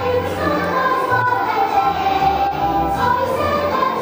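A choir of young children singing together, with instrumental accompaniment carrying a low bass line underneath.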